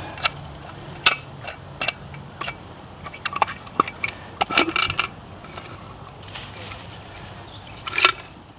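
Irregular metal clicks and clinks as the latch clasp on a heavy cast-iron canister is worked loose and the lid is lifted off. A steady high insect buzz runs underneath.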